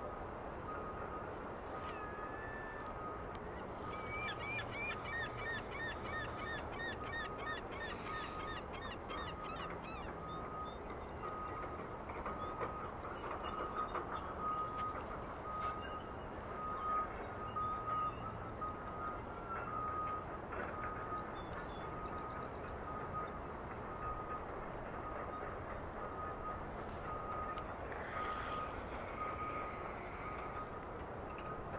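Birds calling outdoors: a run of quick chirps for several seconds near the start and a few scattered calls later. Under them are a steady hiss and a short tone repeating about once a second.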